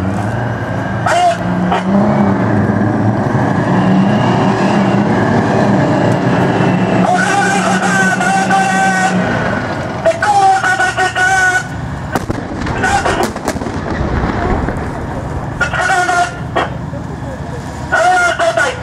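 Type 74 main battle tank's ten-cylinder air-cooled diesel engine running as the tank drives past, a steady low hum through the first half that drops to a deeper rumble later on.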